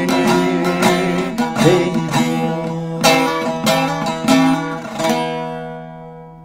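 Bağlama (Turkish long-necked saz) played solo, with separate plucked notes in the uneven aksak rhythm as the closing instrumental phrase of a folk song. The last note, about five seconds in, rings on and fades out as the song ends.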